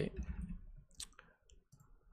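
A few scattered computer keyboard keystrokes, one sharper click about a second in.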